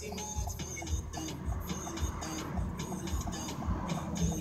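Pop music with a steady kick-drum beat, about two beats a second, playing on an FM car radio inside the cabin.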